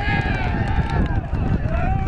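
Loud celebratory shouting as a goal goes in: one long high yell, then a second rising shout about a second and a half in, over a low rumble.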